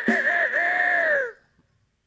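A single rooster crow, about a second and a half long: a short broken opening, then a long held note that falls away at the end.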